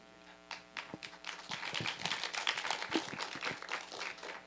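A small audience applauding, starting about half a second in and growing fuller.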